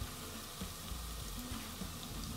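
Onions and ginger-garlic paste frying gently in oil on the lowest simmer, a soft, steady sizzle.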